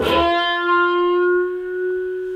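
Electric guitar through a wah pedal: a single note on the G string picked at the start and pushed into a wide bend, then held, ringing on and slowly fading while its brightness shifts with the wah.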